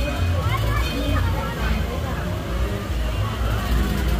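Mixed chatter of riders in a small open-car amusement-park train as it rolls past, over a steady low rumble from the cars.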